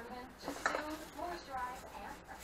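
Empty aluminium beer cans clinking and rattling together, with a few sharp clicks about half a second in, as a can is pulled out of a plastic trash bag full of them.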